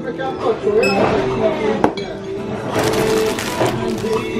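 Background voices and music at a shop counter. A sharp clink comes a little under two seconds in, and there is a burst of rustling around three seconds as plastic-wrapped cracker packs are handled.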